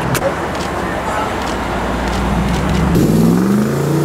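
Mercedes G-Wagon's engine running, then revving up as the SUV pulls away, its pitch rising over the last second. A sharp knock comes just after the start, over a noisy background of voices.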